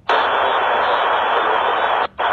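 Air traffic control radio hiss: an open transmission carrying only static, no voice. It starts abruptly, holds steady and cuts off suddenly at the end.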